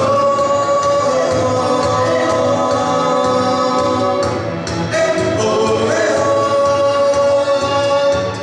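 Live a cappella group singing in several-part harmony, holding long chords, together with a string ensemble of violins, cellos and double bass, over a steady low beat.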